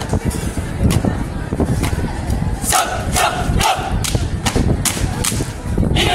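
Drill troop's sharp stamps and strikes, about eight spread through, with a group shout from the troop near the middle, over a steady low crowd rumble.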